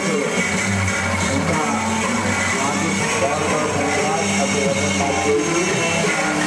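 Music and many voices mixed together over a steady low hum.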